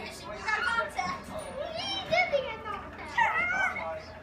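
Young children's high-pitched voices, chattering and squealing in play, rising and falling in pitch, loudest near the end.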